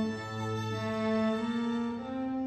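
String trio of violin, viola and cello playing a slow passage of sustained, bowed notes that change every half-second or so, with the cello holding a low note for about the first second.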